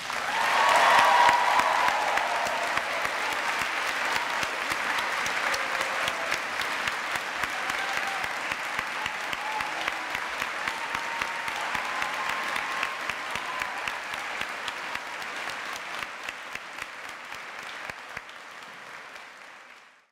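A large audience applauding, loudest at the start and slowly dying down, then cut off suddenly at the end.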